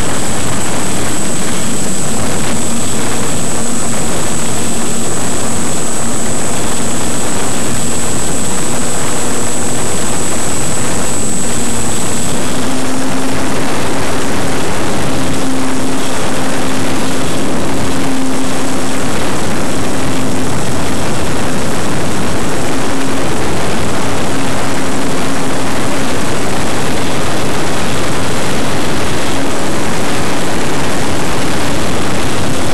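Electric motor and propeller of an RC model airplane, heard loud and close from a camera on its fuselage: a steady propeller drone under heavy rushing noise. About twelve seconds in, a thin high whine stops and the propeller tone steps up slightly as the plane takes off and climbs.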